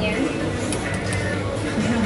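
Background music and voices in a busy café, with a steady low hum and a few light clicks near the counter.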